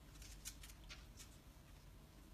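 Near silence with a few faint, scattered clicks: an African grey parrot's claws on a kitchen countertop as it walks.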